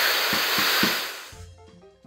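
A loud, harsh hissing noise blast over quick low thumps about four a second, fading away about a second and a half in.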